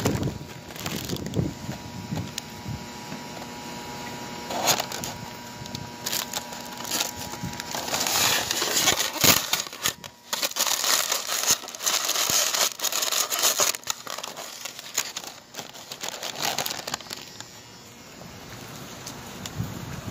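Paper wrapper crinkling and rustling close to the microphone in irregular crackles, busiest around the middle.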